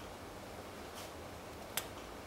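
Quiet room tone with two small clicks: a faint one about a second in and a sharper one near the end.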